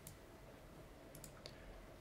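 Faint computer mouse clicks over near silence: one right at the start, then three quick ones about a second and a half in.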